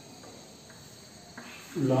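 Chalk writing on a blackboard: a few faint taps and scratches over a low background hiss. A man's voice starts near the end.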